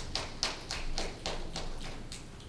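A run of light, sharp taps, about four a second and slightly uneven.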